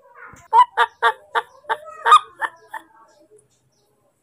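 Newborn baby monkey calling for its mother: a rapid series of about nine short, loud calls over about two seconds, starting about half a second in.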